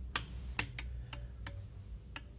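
Small toggle switches on a level-sensor demonstration panel being flipped one after another: a string of about six sharp clicks, the first the loudest.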